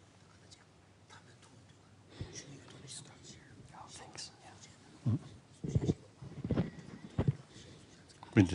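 Hushed, whispered conversation between a few people close by, starting about two seconds in, with several louder murmured words in the second half.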